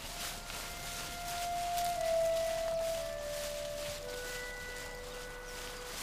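Soft background music score: a slow melody of long held notes stepping downward in pitch.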